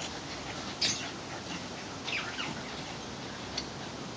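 Short vocal sounds from a French bulldog and a sulphur-crested cockatoo at play. A short harsh burst about a second in is the loudest sound. A couple of quick falling high calls follow about two seconds in, and a single brief click comes near the end.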